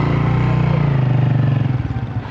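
An engine running close by, a loud steady drone that drops slightly in pitch near the end.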